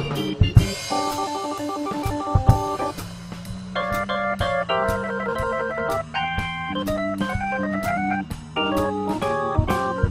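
Korg portable organ playing an instrumental break with held chords that change every second or so and a stepwise rising run of notes near the end. A drum kit keeps time underneath with drum and cymbal strokes.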